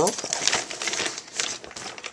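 Crinkling and rustling of a Thirty-One Picnic Thermal Tote being handled, its water-resistant thermal lining and fabric crumpling in the hands in an irregular run of crackles.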